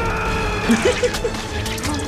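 Film soundtrack playing: orchestral score with sustained held notes, a few short knocks in the second half, and brief voice sounds about a second in.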